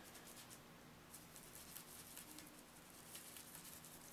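Faint, irregular scratchy strokes of a stiff paintbrush rubbing thick acrylic paint into the grooves of a textured polymer clay tile.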